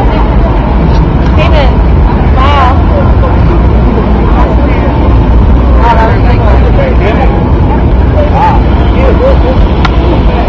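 A steady, loud low rumble, with short snatches of distant voices rising and falling a few times.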